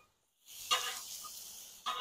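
Food sizzling on a Blackstone flat-top griddle, with burger patties and buns toasting in avocado mayo. The sizzle comes in about half a second in after a moment of silence, swells briefly, then fades.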